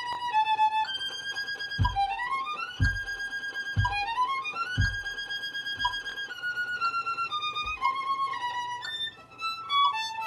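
Solo violin playing a bowed melody with two quick upward-sweeping runs in the first half. A soft low thump sounds underneath about once a second.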